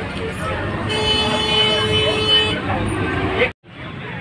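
A vehicle horn sounds one long steady note, held for about a second and a half, over the running noise of a bus in traffic.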